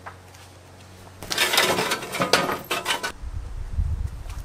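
A towel rustling and flapping as it is spread over a metal-framed lounge chair, with light clinks, starting about a second in and lasting about two seconds. A low rumble follows near the end.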